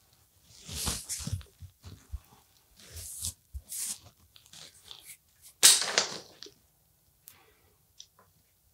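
A hand rustling through hair stiff with hairspray, close to a clip-on microphone, in several short crunchy bursts, the loudest about six seconds in.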